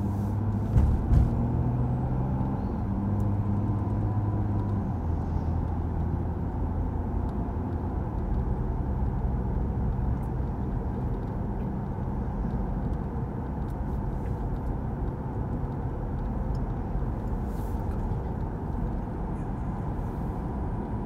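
Car driving along a city street, heard from inside the cabin: a steady low engine hum and road rumble, with two short knocks about a second in.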